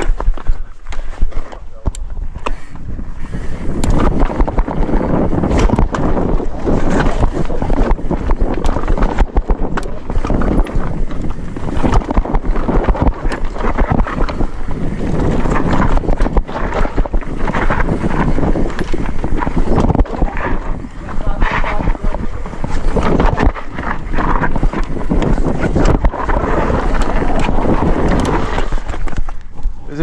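Mountain bike riding fast down a dry dirt trail: tyres rolling over dirt and stones, with frequent knocks and rattles from the bike over bumps, and wind buffeting the microphone.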